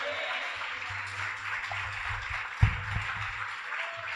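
A church congregation applauding, a steady patter of many hands clapping. There is one low thump about two and a half seconds in.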